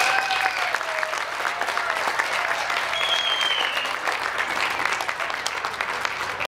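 Audience applauding steadily, a dense patter of clapping. A voice calls out in the first second and a high whistle sounds about three seconds in.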